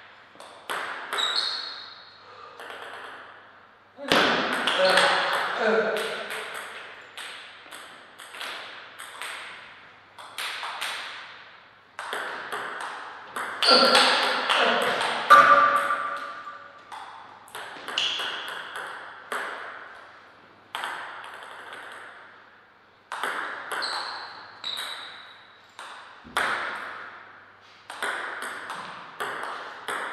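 Table tennis ball clicking off paddles and the table in rallies, the clicks coming in irregular runs with short pauses between points, each trailing off in a short reverberant ring.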